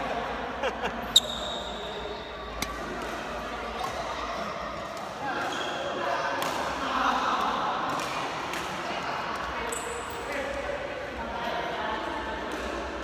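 Badminton rackets hitting a shuttlecock, with footfalls on the court: single sharp cracks a second or two apart, the loudest about a second in with a short high ring after it. Voices murmur in the large sports hall behind them.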